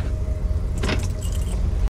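Car engine running with a steady low rumble heard from inside the cabin. A sharp click comes a little under a second in, followed by light jingling, and the sound cuts off abruptly just before the end.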